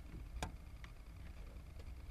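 A sharp click about half a second in, then two faint ticks, from handling a digital multimeter and its test leads, over a low steady background rumble.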